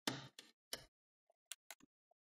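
Plastic clips of an ASUS VivoBook Flip TP501UA laptop case clicking loose as the case seam is pried and twisted open, about six sharp clicks spread over two seconds, the first the loudest.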